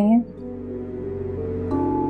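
Ambient background score of long held notes, growing slowly louder, with new notes coming in near the end.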